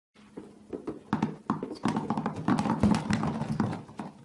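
Many apples dropping and bouncing on a hard surface: an irregular patter of knocks that starts sparse, thickens in the middle and thins out near the end.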